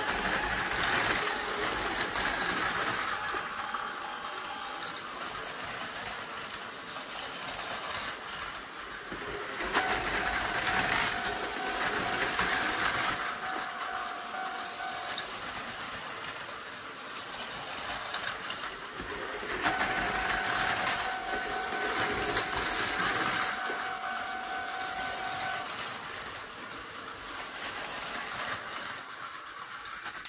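Two battery-powered Tomy Plarail toy trains, one the MSE Romance Car, running on plastic track: a steady whir of small motors and gears with wheel clatter. It swells about every ten seconds, with a steady whine for a few seconds each time a train runs close by.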